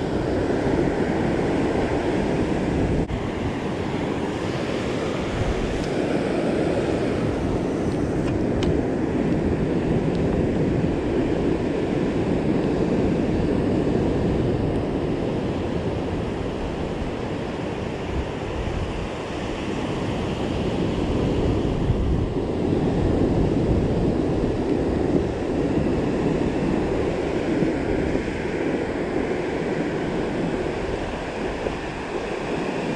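Ocean surf breaking and washing up a sandy beach: a continuous rushing that slowly swells and eases.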